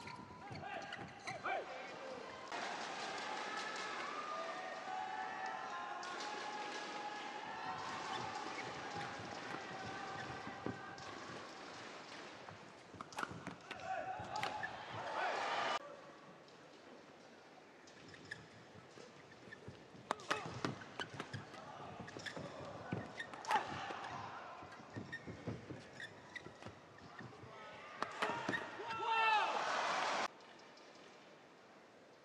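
Arena crowd cheering and shouting for several seconds after a long badminton rally, dying down about halfway through. Then quieter hall noise with sharp, scattered cracks of rackets striking the shuttlecock as play resumes.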